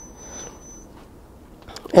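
Faint background hiss during a pause in speech, with a thin, steady high tone that stops a little under a second in.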